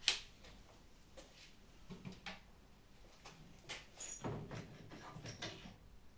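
Clamps being undone and set down on a wooden workbench: a sharp knock at the start, then scattered light clicks and knocks.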